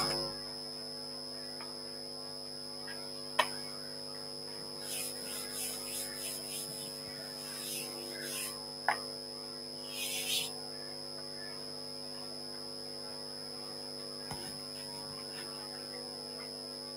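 Steady electrical mains hum, with faint scratches and taps of chalk on a blackboard between about 5 and 8.5 s in, two sharp clicks, and a brief rub against the board near 10 s.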